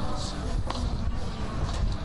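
Ballpark crowd voices over a low rumble, with one sharp crack about two-thirds of a second in as the pitched ball arrives at the plate.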